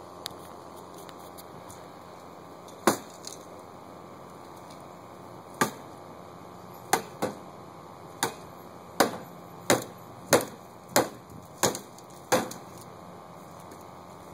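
A hollow plastic toy bat being swung against a hard surface: about eleven sharp knocks, a few seconds apart at first and then coming faster, about one every 0.7 s toward the end.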